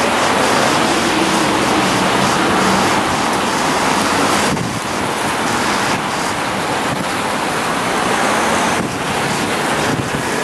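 Loud, steady rushing noise of wind buffeting the microphone and rain falling on a wet street and umbrellas, dipping briefly about halfway through and again near the end.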